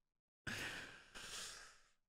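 A man sighing: two soft breathy breaths, the first about half a second in and the second just after a second in.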